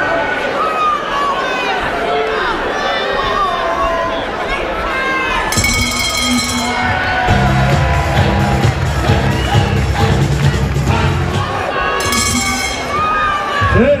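Boxing crowd shouting and cheering, many voices at once. About five seconds in, loud music with a heavy bass comes in over the noise for about six seconds.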